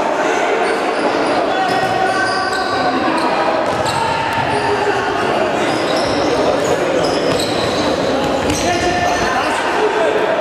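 Indoor futsal match in a large sports hall: the ball being kicked and bouncing on the court amid a steady mix of players' and spectators' voices calling out, with short high squeaks scattered through it.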